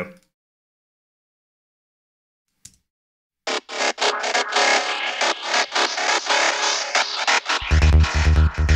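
Playback of an electronic trance track. After a few seconds of silence broken by one faint click, a fast, rhythmic mid-range synth bass part starts about three and a half seconds in. A deep pulsing kick and sub-bass join it near the end.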